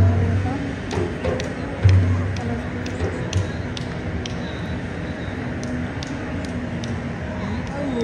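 Supporters' group in the stands chanting, with deep bass-drum beats: the loudest at the start and about two seconds in, and weaker ones near three seconds. Scattered sharp claps run through it.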